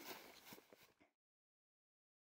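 Near silence: faint background hiss with a couple of soft ticks, cutting off to dead silence about a second in.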